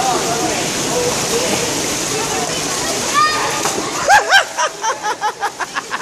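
Splashing water and echoing voices at an indoor swimming pool as a boy belly-flops off a starting block into the water. From about four seconds in, someone laughs in a quick ha-ha-ha rhythm.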